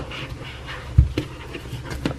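Close-up cardboard handling as a white paperboard box's lid is slid and set down over its tray: soft scraping and rustling, small clicks, and one dull thump about a second in.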